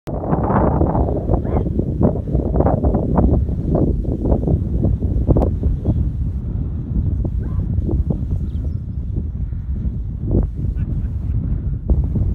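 Wind buffeting the microphone: a loud, steady low rumble with many short gusts in the first half.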